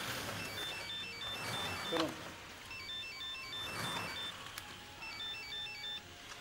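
Mobile flip phone ringing with an electronic ringtone: a short melody of quick high beeps played three times, the last cut off near the end as it is answered.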